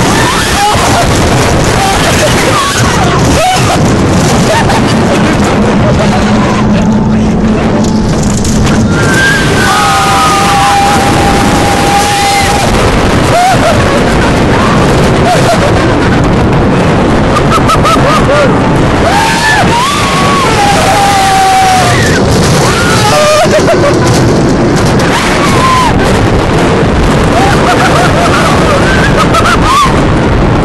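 Wind blasting across a phone's microphone on a moving rollercoaster, loud and unbroken. Over it, riders let out drawn-out, sliding screams several times, around ten seconds in and again near twenty seconds.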